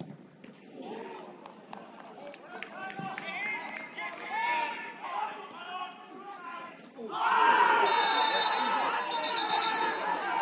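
Players' voices calling and shouting across an outdoor football pitch, scattered at first. About seven seconds in, many voices suddenly shout at once, much louder.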